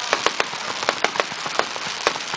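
Aerial fireworks crackling: a string of sharp, irregular pops, about five a second, over a steady hiss.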